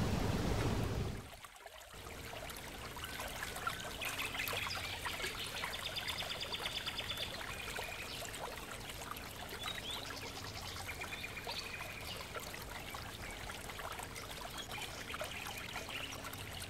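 Brief outdoor background hiss, then after a short dip, a steady trickle of running water with faint higher tones over it.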